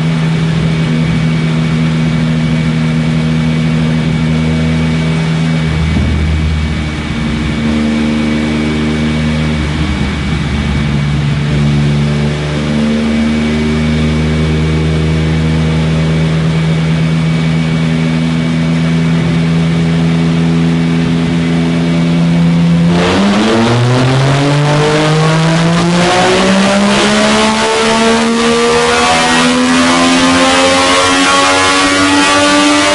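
Remapped Yamaha MT-09 inline-three engine running steadily in sixth gear on a chassis dynamometer, its speed limiter removed. After about 23 seconds it goes to full throttle and the revs climb in one long rising pull that is still building at the end.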